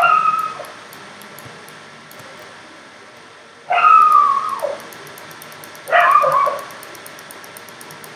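Three short, high whining calls, each falling in pitch: one right at the start, a longer one about four seconds in, and one about six seconds in. The calls sound like an animal's.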